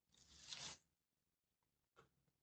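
A single soft rustle of a stiff white fabric sheet being handled, swelling for about half a second near the start, then quiet.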